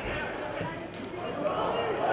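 Footballers shouting on the pitch, with a ball being kicked once or twice.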